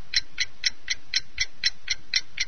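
Clock ticking sound effect, an even tick about four times a second, counting down the time to answer a quiz question.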